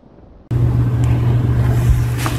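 Quiet at first, then a loud, steady low hum with hiss that starts suddenly about half a second in.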